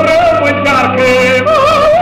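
Singing with a strong wavering vibrato, played from a 1927 Edison Bell 78 rpm shellac record of a Romanian revue duet, with held notes that dip and rise over the accompaniment.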